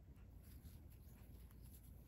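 Near silence: room tone with a low hum and a few faint soft ticks of a steel crochet hook working cotton thread.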